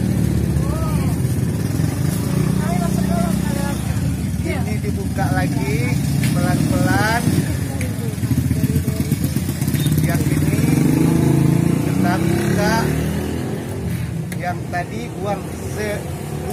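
A motor vehicle engine running steadily, loudest around the middle and easing off near the end, with people's voices over it.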